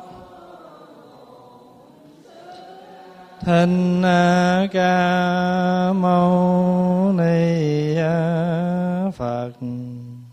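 A man's voice chanting a Vietnamese Buddhist invocation to the Buddha, through a microphone. After a quieter first few seconds, the long drawn-out syllables come in on a nearly steady pitch, dipping slightly once, and end about a second before the close.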